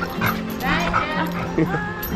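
Dogs play-wrestling, with a burst of short, high-pitched dog vocalizations about half a second to a second in, over steady background music.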